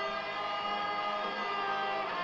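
Electric guitar playing long held notes.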